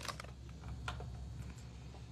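A few faint, sharp clicks and taps of plastic-bagged reading glasses being handled on a display rack's hooks, over a low steady room hum.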